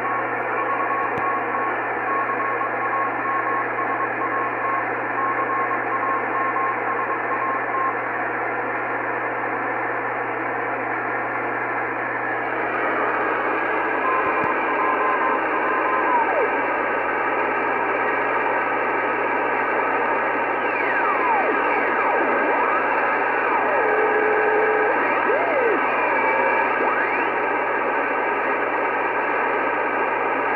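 Icom IC-R8500 communications receiver in upper-sideband mode on the 2-metre downlink of the XW-2C satellite: a steady hiss of receiver noise with a low hum underneath, and an on-off keyed beacon tone for the first several seconds. About halfway in, whistling tones slide up and down in pitch as the tuning dial is turned across the signals.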